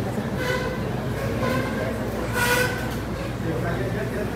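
Indistinct chatter of people in a hall over a steady low hum, with one louder voice about two and a half seconds in.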